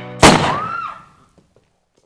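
A single handgun shot, sudden and loud, about a quarter of a second in, dying away over about a second.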